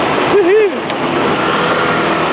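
Small motor scooter's engine running as it is ridden slowly, with a steady rushing noise. About half a second in, a short voice sound rises and falls in pitch.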